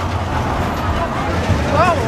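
Fairground background noise: a steady low rumble with indistinct crowd chatter, and a short voice rising near the end.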